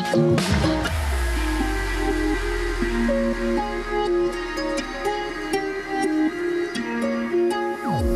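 Electronic dance music in a breakdown: a melody of short pitched notes over a held low bass, the beat dropping out about half a second in and coming back at the end.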